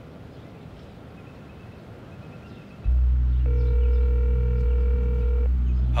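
A telephone ringback tone rings once for about two seconds while a call connects. Under it a deep, steady low drone comes in about three seconds in and is the loudest sound.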